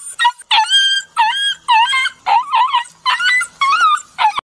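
A dog yelping in a rapid series of high-pitched cries, about two a second, each one bending up and down in pitch.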